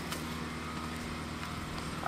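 A steady low mechanical hum, like a distant engine, with a few faint steps of a horse's hooves walking on dirt and straw.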